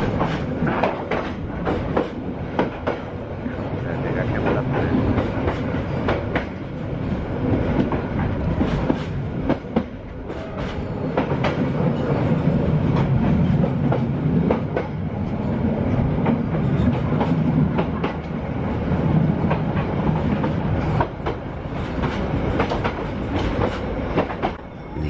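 Passenger train rolling slowly, a steady rumble from the carriage with irregular clacking of the wheels over the rail joints.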